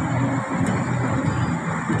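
A low, muffled voice murmuring in short broken stretches over a steady background hiss.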